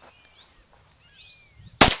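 A single shot from a .22 semi-automatic target pistol near the end, a sharp crack followed by a short echo.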